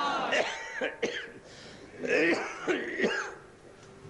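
A man's voice in short, strained, pitched bursts rather than clear words: one at the start and another from about two to three seconds in, with a quieter gap between.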